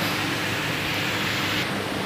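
Steady rushing background noise, even in level, with a slight change in its higher part near the end.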